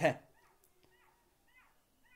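Faint, short, high-pitched animal calls, repeated several times about half a second apart, under a pause in speech.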